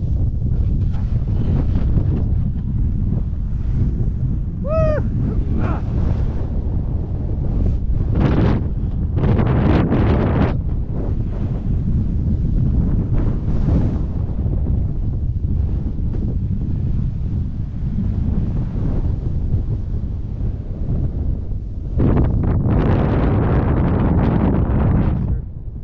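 Wind buffeting the microphone on an exposed glacier ridge: a heavy, steady low rumble that swells in gusts and is loudest near the end. A short pitched call sounds once about five seconds in.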